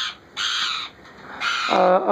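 Indian ringneck parakeet giving two short, harsh screeching calls in quick succession.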